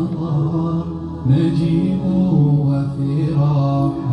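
A man chanting in long, drawn-out held notes, in the melodic style of Quran recitation, with a brief break about a second in.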